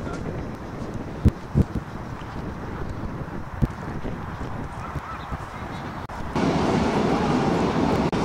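Outdoor ambience with wind on the microphone and a few sharp handling knocks. About six seconds in, it cuts abruptly to a louder, busier background with voices.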